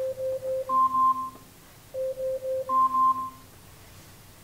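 An electronic wake-up alarm beeping: three quick low beeps followed by two higher two-note beeps, with the whole pattern played twice about two seconds apart.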